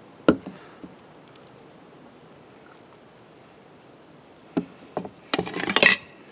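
Camp cook kit being set out on a wooden picnic table: a single sharp knock just after the start as a plastic fuel bottle is set down, then a cluster of knocks and metal clinks near the end as a stainless steel cook pot is handled.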